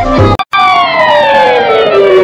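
Cartoon sound effect: a single pitched tone slides slowly and steadily downward after a brief cut-out of sound about half a second in.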